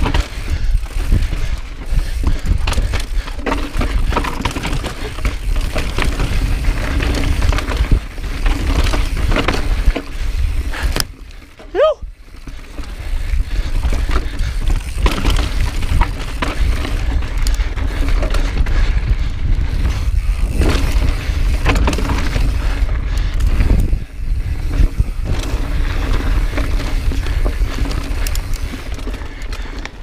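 Mountain bike ridden over rock, heard from a body-mounted camera: tyres, suspension and frame rattling and knocking over rock amid steady wind rumble on the microphone. A brief lull about eleven seconds in holds a short rising tone.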